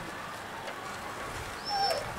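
Steady outdoor background hiss with no speech, and a brief faint high chirp near the end.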